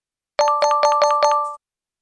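Electronic reward chime sound effect: a quick run of about six bright ringing notes over roughly a second, marking the completed exercise and its five-star score.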